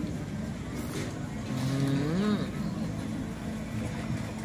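A man's closed-mouth "mmm" of enjoyment as he chews a mouthful of food: one hum about halfway through that rises and then falls in pitch, over steady background noise.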